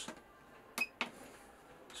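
A finger tapping the gauges button on a Swift Sergeant touch control panel: a short click with a brief high-pitched blip about three-quarters of a second in, then a second sharp click a moment later, as the battery and tank gauge lights come on.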